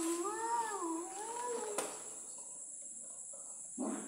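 A long, wavering voice-like call that rises and falls in pitch, ending a little under two seconds in. It is followed by a short knock and, near the end, a thump.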